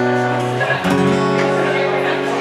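Acoustic guitar playing sustained, ringing chords as a song's intro, moving to a new chord a little under a second in.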